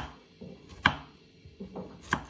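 Kitchen knife slicing garlic cloves thinly on a wooden chopping board: two sharp knife strikes on the board, at the start and nearly a second later, with fainter taps between.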